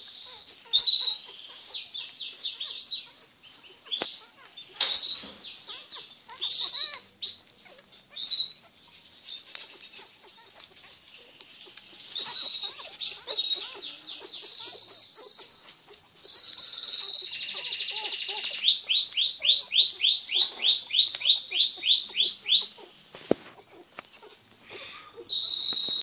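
Birds chirping with short high calls. A buzzy stretch comes a little past the middle, then a rapid run of about fourteen identical chirps, roughly three a second.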